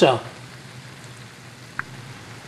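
Clam fritters shallow-frying in hot oil in a skillet, a steady sizzle, with one short tick near the end.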